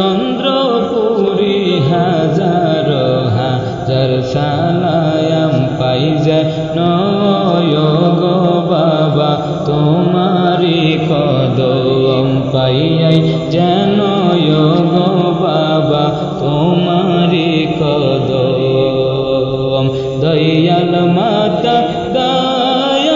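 Bengali devotional gazal music: a chanted melodic line that rises and falls in a repeating pattern, without a pause.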